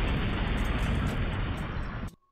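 Logo-intro sound effect: a steady, dense rushing noise with a deep rumble, easing slightly near the end.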